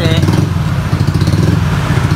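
Honda Beat FI scooter's small single-cylinder engine idling steadily, its idle still running a little high because the ECU throttle reset is not yet complete.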